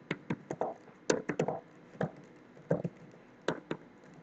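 Computer keyboard typing: about a dozen light key clicks at an uneven pace, some in quick clusters of two or three.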